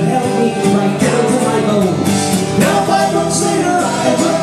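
Live song: acoustic guitar strummed under sung vocals.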